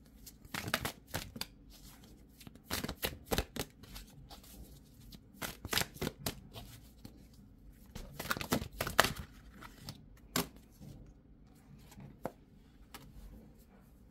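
Tarot deck being shuffled by hand: several short spells of quick card snaps and slides with pauses between, the loudest about nine seconds in.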